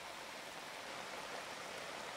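A steady hiss of heavy rain and moving floodwater.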